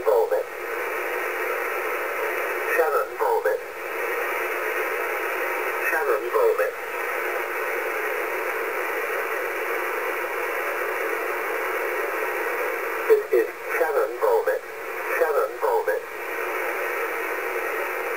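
Yaesu FT-840 HF receiver in upper sideband on 5505 kHz: a steady, narrow-band hiss of shortwave noise, with brief snatches of the VOLMET aviation-weather voice breaking through every few seconds.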